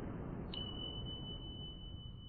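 Sound effect of a subscribe-button animation: a low rumble fading away, and about half a second in a single high, steady ping-like tone that starts and holds.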